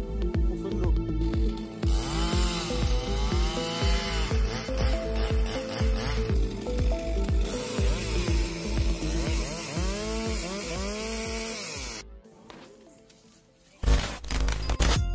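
Background music with marimba notes and a steady beat, over a Stihl chainsaw revving up and down again and again as it cuts through a felled birch log from about two seconds in. Both cut off abruptly about twelve seconds in.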